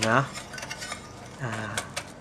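Scattered light metallic clicks and clinks as an amplifier circuit board bolted to an aluminium heatsink is handled and shifted on the bench.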